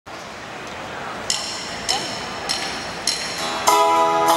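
Live band starting a song. Crowd noise gives way to four sharp, evenly spaced count-in clicks, and near the end the band comes in together with strummed acoustic guitar, clearly louder.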